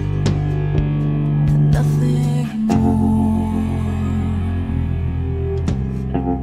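Instrumental band passage without vocals: guitar chords over a sustained bass line, changing chord about two and a half seconds in.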